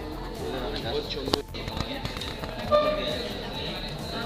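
Indistinct voices of students talking in a classroom, no clear words. A sharp click comes a little over a second in, and a short, loud tone sounds near three seconds in.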